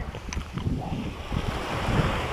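Wind buffeting the action camera's microphone, a low uneven rumble, with a few faint clicks.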